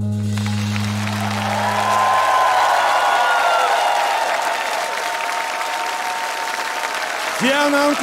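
Studio audience applauding and cheering as the song's closing low sustained note fades out about two to three seconds in; the applause carries on, and a voice starts speaking near the end.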